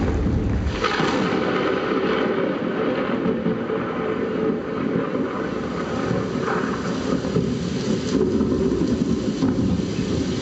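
Loud, steady noise of a crowd in a hall: a dense roar of many voices with no single voice standing out.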